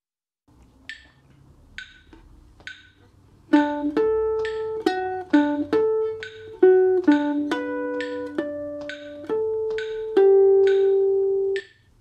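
Guitar playing a phrase of single notes and ringing harmonics, coming in about three and a half seconds in. The last note is held and cuts off just before the end. A regular click counts in about once a second, then ticks twice as fast under the guitar.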